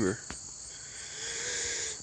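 Steady high-pitched chirring of insects, with a faint low hum swelling and fading in the second half.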